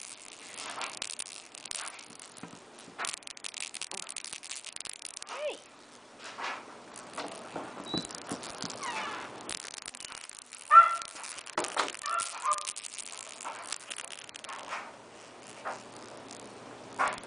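Scattered clicks and rustles of a cat toy being handled and batted about on a fabric blanket, with a few short pitched calls and one short loud call about eleven seconds in.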